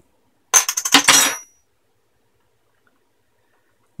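A thin metal pry blade set down on a desk, clattering in a quick run of clinks with a brief metallic ring, starting about half a second in and lasting about a second.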